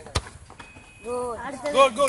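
A single sharp thud of a football being kicked for a penalty, followed from about a second in by voices calling out.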